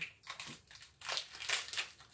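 Candy wrapper crinkling in the hands as a package is opened, in a few short rustles, most of them in the second half.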